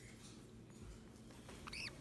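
Green-cheeked conure chick giving one short, high squeak near the end, rising then falling in pitch.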